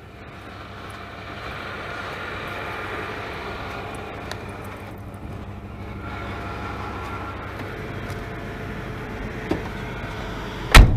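A vehicle's engine idling steadily, growing louder over the first few seconds as it is approached, then holding level. A short click comes near the end.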